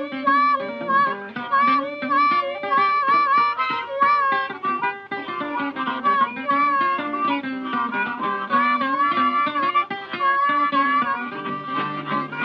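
Instrumental break in a 1938 country-blues record: harmonica playing wavering, bent notes over plucked mandolin and string accompaniment.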